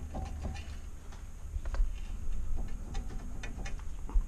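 A car wheel with a bad wheel bearing being turned by hand on a lift, giving a low rumble with faint scattered ticks.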